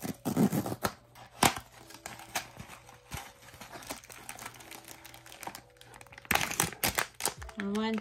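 A small cardboard blind box being opened by hand: a rustle and scrape as the top flap is pulled open, a few light taps, then the plastic inner bag crinkling loudly as it is pulled out near the end.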